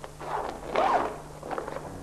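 Zipper on a large woven plastic bag being pulled open in three strokes, the middle one longest and loudest.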